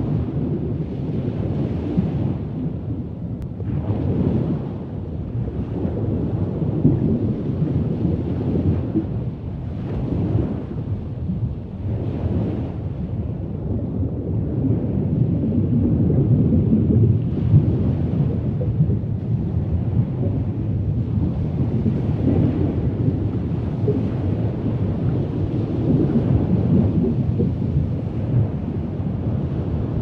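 Low, rumbling water ambience with no music, swelling and easing every couple of seconds.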